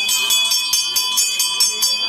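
Hanging brass temple bell rung rapidly, about four to five clangs a second over a steady ringing tone.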